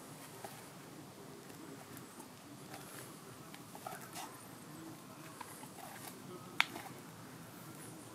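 Faint outdoor background with scattered short chirps and light ticks, and one sharp click about six and a half seconds in.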